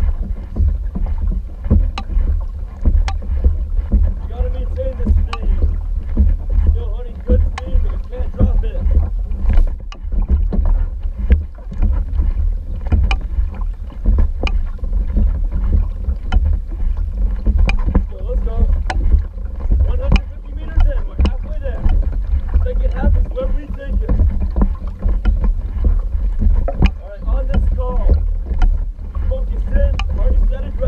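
Outrigger canoe being paddled: paddle blades catch the water with sharp splashes about once a second, in a steady stroke rhythm. Heavy wind rumble runs underneath on the hull-mounted camera microphone.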